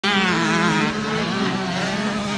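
KTM 85 two-stroke motocross bike engine running at high revs, its pitch wavering slightly with the throttle and easing a little about a second in.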